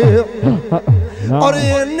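Male voices singing a Punjabi naat through a microphone and PA, over a low pulsing accompaniment that falls in pitch about twice a second; the lead singer's next phrase starts about a second and a half in.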